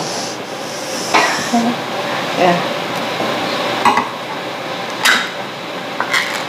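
Pull-tab lid of a metal tomato paste can being worked open by hand: a scratchy metal rasp for the first second or so, then a few sharp clicks.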